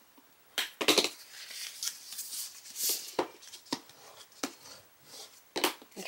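Stiff cardstock being handled and folded along its score lines into a box base: scattered sharp clicks and short rustles of the paper and the hands.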